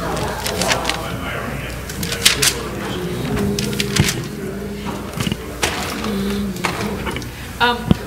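Indistinct low voices talking, with scattered sharp clicks and knocks.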